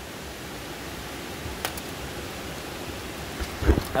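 Steady rushing hiss like flowing water, with a single sharp click about one and a half seconds in and a few low thumps near the end.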